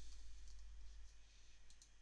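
A few faint clicks of a computer mouse and keyboard, the last ones near the end, over a low steady hum.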